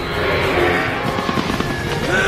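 Film soundtrack: orchestral score under a loud, dense rushing and crackling layer of flight sound effects from a large flock of winged creatures, rising in volume just as the shot begins.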